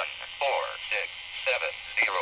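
Ham radio repeater's automated identification received on a mobile ham transceiver: a thin, narrow-band voice from the radio's speaker, the repeater announcing itself.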